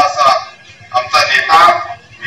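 A man making a speech into a microphone, with a short pause about half a second in before he goes on.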